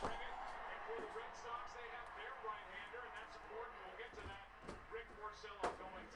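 Sealed cardboard trading-card boxes being handled and set down: a knock at the start and a few more knocks after about four seconds, under faint, indistinct speech.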